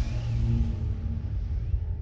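Cinematic logo sting sound effect: a deep rumbling swell with a thin, steady high shimmer on top. The shimmer cuts off about two-thirds of the way through, and the rumble slowly begins to fade.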